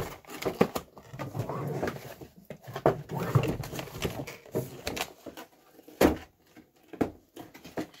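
Cardboard and plastic toy packaging being handled and opened: irregular rustling and scraping as a plastic tray slides out of a cardboard window box, with two sharp knocks about six and seven seconds in.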